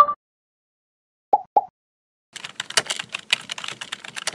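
A short pop at the very start and two quicker soft pops about a second and a half later, then rapid computer-keyboard typing clicks from a little past halfway. These are animation sound effects, the typing matching text being typed into an on-screen search bar.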